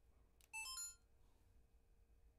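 A button click, then a DJI Osmo Action camera's short electronic chime of a few notes stepping up in pitch.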